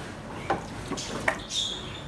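Raw chicken pieces being tipped from a glass bowl into a plastic food processor bowl: a couple of light knocks and clatters, about half a second and a second and a quarter in.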